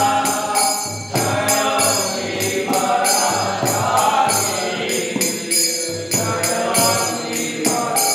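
Devotional group singing (kirtan) over a steady metallic percussion beat.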